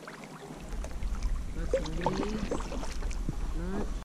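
Kayak paddle dipping and dripping on calm lake water, light splashes and drips, under a low rumble of wind on the microphone that sets in about half a second in. A faint voice is heard in the middle and near the end.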